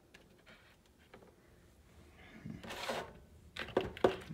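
Quiet kitchen with faint handling noises: a few light clicks, a soft rustle a little before three seconds in, and sharper clicks near the end.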